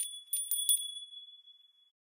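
A tinkling bell-chime sound effect: about four quick bright strikes in the first second that ring on and fade away about a second and a half in.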